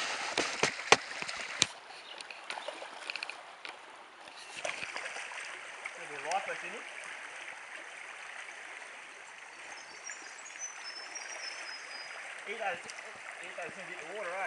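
Shallow creek water running steadily over stones, with a quick run of sharp clicks in the first two seconds.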